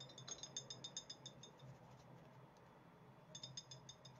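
Near silence, with faint rapid ticking of a dry brush dabbing green dust colour, about eight ticks a second in two short runs, the second near the end, over a faint low hum.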